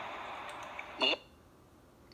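A computer mouse clicking a couple of times over a steady hiss, then, about a second in, the first instant of the replayed 'Laurel' voice clip, cut off abruptly into dead silence.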